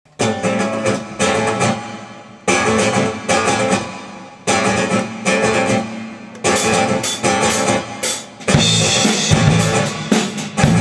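Live band intro: acoustic guitar and electric bass strike chords together about every two seconds, letting each one ring and fade. About eight and a half seconds in, the band drops into a continuous groove with drum kit.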